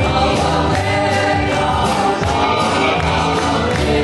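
A man singing a gospel worship song into a microphone while strumming an acoustic guitar, with more voices singing along.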